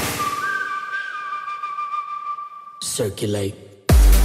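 A breakdown in a tech house track: the kick and beat drop out, leaving a held whistle-like synth tone, then a short vocal snippet about three seconds in. The heavy kick drum beat returns right at the end.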